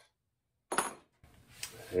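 A short metallic clink from the steel auger being handled, a little before halfway in, after a moment of dead silence; a lighter click follows.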